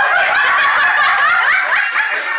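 Several people laughing and chattering at once, loud and overlapping.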